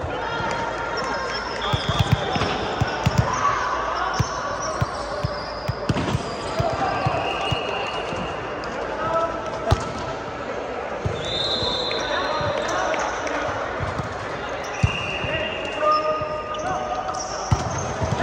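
Volleyballs being struck and hitting the floor in a large indoor sports hall, in sharp irregular thuds. Sneakers squeak briefly on the court, over steady chatter and calls from players.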